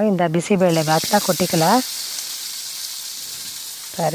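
Tempering of hot ghee with mustard seeds and crushed garlic sizzling in a small pan, a steady hiss that sets in about a second in and keeps going.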